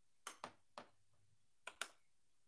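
Five sharp clicks of computer keyboard keys being pressed, spaced irregularly, over a near-silent room; the last click, near the end, is the loudest.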